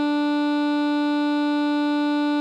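A single alto saxophone note, written B4 (concert D4), held steady as a half note in melody playback, with a rich, buzzy set of overtones and no change in pitch or loudness.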